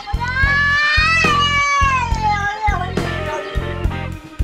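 A domestic cat giving one long meow that rises in pitch and then falls away, over background music with a steady beat.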